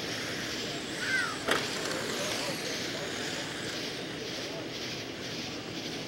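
Electric RC late model cars with 17.5-turn brushless motors running on a clay oval, heard as a steady haze of motor and tyre noise. A brief falling chirp comes about a second in, and a single sharp click about a second and a half in.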